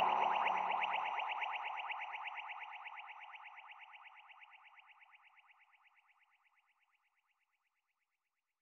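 End of a deep house track: a rapidly pulsing synthesizer tone fades out steadily. The bass drops away about a second in, and the tone is gone about five seconds in.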